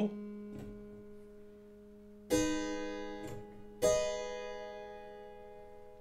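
Keyboard instrument playing figured-bass chord examples: a low bass note rings on from a chord struck just before, then two more chords sound about two seconds in and a second and a half later, each struck sharply and fading away slowly.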